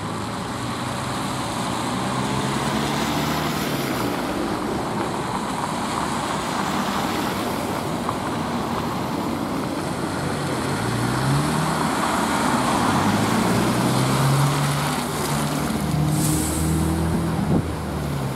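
A Trolza-5265.08 'Megapolis' trolleybus pulling in to a stop, over the steady noise of tyres and passing traffic on a snowy road. In the second half its electric drive hums in tones that rise and fall in pitch. Near the end there is a short hiss of air and a sharp click.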